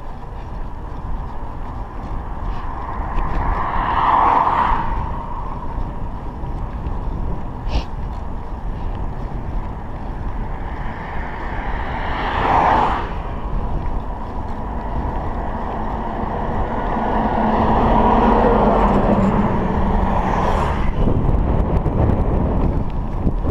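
Wind buffeting the microphone of a chest-mounted GoPro on a moving bicycle, with motor vehicles passing on the road: one swell about four seconds in, a short one at about twelve seconds as an oncoming van goes by, and a longer one near the end.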